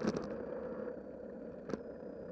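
Bicycle rolling along a paved path, heard from a camera mounted on the bike: steady tyre and riding noise with a faint high whine. Sharp knocks come as bumps jolt the camera, a loud one right at the start and another near the end.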